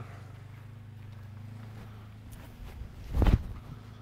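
Footsteps of a disc golfer's run-up on an artificial-turf tee pad: a few light steps, then one heavy thud a little over three seconds in as he plants for the throw. A low steady hum runs underneath.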